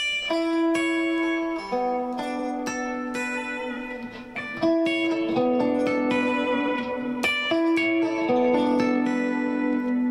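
Electric guitar playing an improvised line of single notes and double stops left to ring into each other like chords, with new notes picked every second or so and a similar figure coming round again about halfway and near the end.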